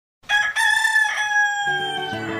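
A rooster crowing once: a short opening burst, a brief break, then a long drawn-out final note that sinks slightly in pitch. Near the end, music with low plucked notes starts under the crow.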